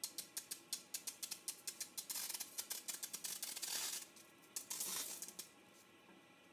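Water drops from a dropper landing on a very hot stainless steel frying pan, crackling in rapid clicks and sizzling as they skitter over the surface. The pan is far above boiling, so the drops bead up and glide on a cushion of their own steam (the Leidenfrost effect). The crackling thins out about four seconds in and then comes in a short burst again near five seconds.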